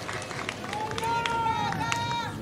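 A single voice calls out one long drawn-out note, held at nearly one pitch for about a second, over outdoor crowd noise with a few scattered claps.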